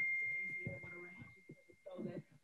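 A single bell-like chime fading away: one clear high tone that dies out over the first second and a half. It is the interval timer signalling the start of the workout round.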